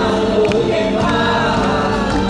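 Live pop music through a concert PA: several voices singing together in held, sustained notes over a full band.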